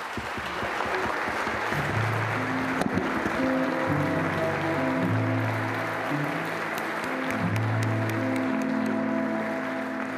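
Audience applauding. About two seconds in, a small live ensemble with a cello starts playing: low held notes, with higher notes joining a little later.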